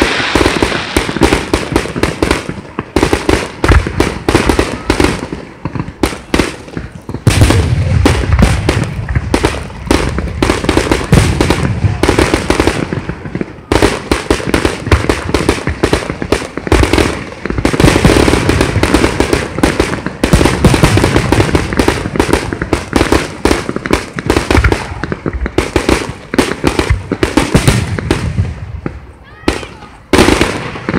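Fireworks going off in a dense, continuous barrage, many bangs and crackles in quick succession from bursting shells and ground effects. There is a brief let-up about halfway through, and it thins out near the end.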